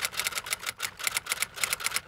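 Typewriter typing sound effect: a rapid, even run of key clicks, about nine a second.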